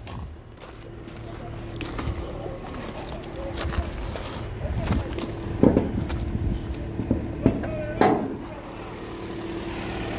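2014 Toyota Harrier's 2.0-litre Valvematic four-cylinder petrol engine idling steadily, with a few knocks and clunks as the bonnet is lifted, the loudest about eight seconds in.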